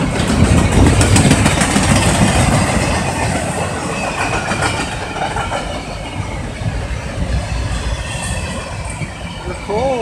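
Double-stack intermodal container train rolling past close by: the steady noise of the well cars and their wheels on the rails, slowly getting quieter.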